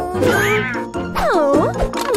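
A cartoon character's wordless, whiny vocal calls that slide up and down in pitch: a short rise-and-fall near the start, then a longer dipping swoop from about a second in. Light background music plays underneath.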